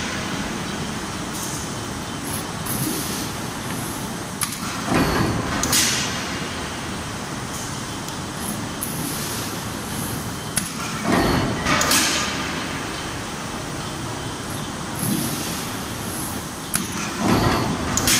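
Galvanized steel coil cut-to-length line running steadily, with a louder swell of metal noise about every six seconds, three times, as the line cycles through its sheets.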